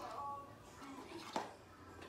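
A brief trace of a child's voice at the start, then quiet room noise with a single sharp knock a little past halfway.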